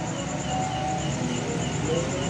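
Crickets chirping in a steady, rapid pulse of about five or six chirps a second over a low background murmur.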